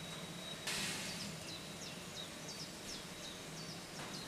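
Steam hissing steadily from a BR Standard Class 9F steam locomotive, starting suddenly just under a second in, with a small bird chirping repeatedly over it.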